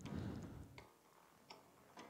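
Faint sharp clicks, three or four spaced irregularly, after a brief low rumble at the start.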